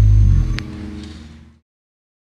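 Electric bass and electric guitar holding a final low chord at the end of a live song. It drops away about half a second in and fades to silence by about a second and a half.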